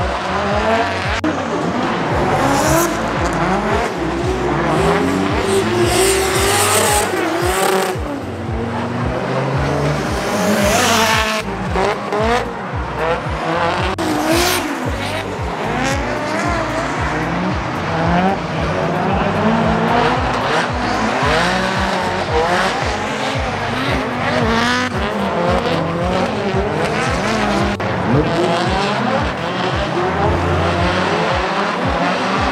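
Drift cars at high revs, their engines rising and falling in pitch over and over as the drivers work the throttle through the slides, with tyres squealing. At times more than one engine is heard, as cars drift in tandem.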